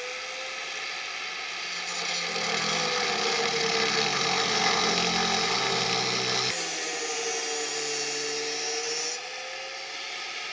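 Angle grinder cutting through the steel jack spur of a Porsche 911: a steady motor whine with the grinding rasp of the disc in metal. It grows louder and its pitch sags slightly while the disc is pressed into the cut in the middle.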